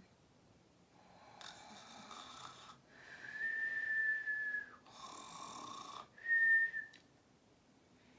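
A person whistling two steady high notes, one long note of nearly two seconds and then a short one, with airy breath sounds before each.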